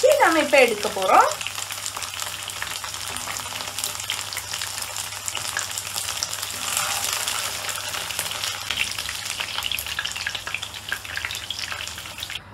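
Batter-coated boneless chicken pieces shallow-frying in hot oil in a pan, sizzling with a steady, dense crackle.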